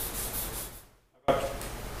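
Chalk scratching across a blackboard while writing, a rough hiss that cuts off abruptly just before a second in; a man's voice starts speaking near the end.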